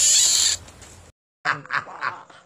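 An otter lets out a loud, short hissing squeal that lasts about half a second and fades away. The sound then cuts off, and a voice starts speaking about one and a half seconds in.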